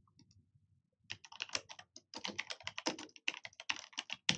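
Typing on a computer keyboard: a quick, dense run of key clicks starting about a second in.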